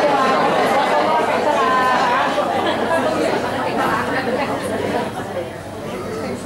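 Several people talking at once in a hall, an overlapping chatter of audience voices that dies down near the end.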